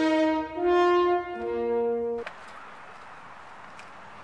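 Brass music: a short phrase of held horn-like notes that cuts off abruptly a little over two seconds in, leaving steady outdoor background noise.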